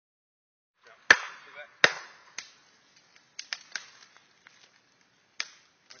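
Two sharp knocks about three-quarters of a second apart, the first the loudest, followed by scattered lighter knocks and clicks.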